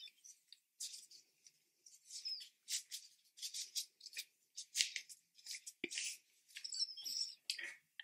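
Gloves being pulled off the hands: a run of short, irregular dry rustles and scuffs.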